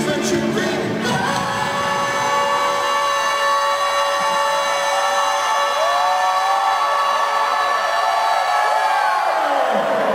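Live rock concert through an arena PA: the lead singer holds one long high sung note while the band's low end drops away, with the crowd cheering and whooping under it. The full band comes back in right at the end.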